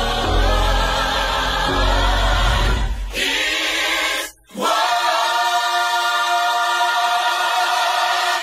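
A recorded gospel-style choir singing over a heavy bass line. The bass drops out about three seconds in, and after a brief break the choir holds one long chord.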